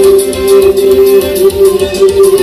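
Morin khuur (Mongolian horse-head fiddle) being bowed in a folk tune: one strong held drone note with a melody moving above it and a fast, even pulse underneath.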